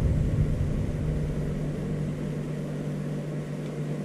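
Steady low machine hum with a low rumble underneath that gradually fades.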